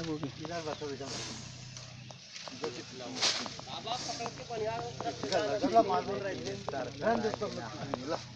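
A snake hissing in short bursts, a faint hiss about a second in and a louder one about three seconds in.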